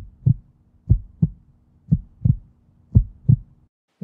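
Heartbeat sound effect: four double low thumps, about one pair a second, over a faint steady low hum that stops shortly before the end.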